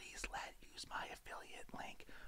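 A man's voice whispering faintly, with no voiced sound.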